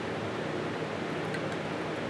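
Steady, even background hiss of room noise, with no distinct sound events.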